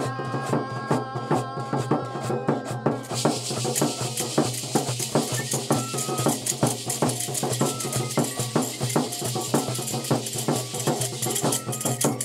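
Background music with a steady rhythmic beat of percussion under a melody. A dense rattle or shaker layer comes in about three seconds in.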